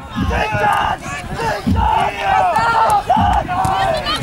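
Several young voices shouting and cheering over one another, over a low drum beat about every second and a half: the timekeeper's drum counting the stones of a jugger match.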